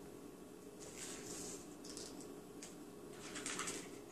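Faint rustling and scraping of hands handling cut plastic spoons and a hot glue gun, in two short bursts about a second in and near the end, over a steady low hum.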